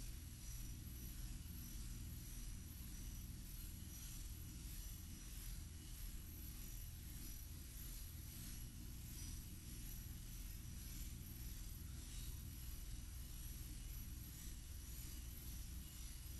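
Steady low hum and hiss of room tone, with no distinct sound events.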